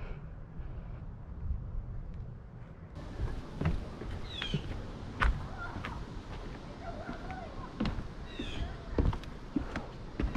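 A low steady rumble on a head-mounted camera's microphone. After a cut comes walking on a wooded path: scattered footsteps and knocks, with a few short high falling chirps, typical of small birds, twice.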